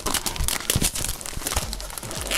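Thin plastic wrapping crinkling and tearing as it is pulled off a new polypropylene sediment filter cartridge, a dense run of irregular crackles.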